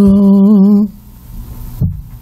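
A woman's voice holding one long unaccompanied note into a microphone, wavering slightly before it stops just under a second in.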